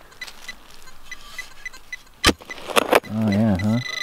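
A metal detector's short electronic beeps, about four a second, giving way to a steady tone near the end as it sits over a target. A couple of sharp clicks from digging in the soil come a little past halfway, followed by a brief voice.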